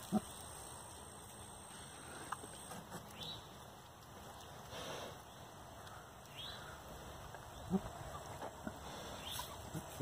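A sow and her piglets snuffling and rooting in the dirt around a trough: faint, scattered sounds with a few short clicks.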